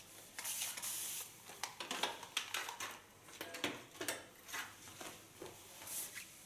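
A corded hot razor and comb drawn through wet hair: a series of short, irregular scraping strokes.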